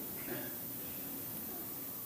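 A pause in a man's speech: faint steady room noise picked up by the pulpit microphone.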